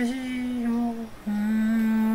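A man humming two long held notes with his mouth closed, the second a little lower and starting about a second in, as part of a mock singing performance.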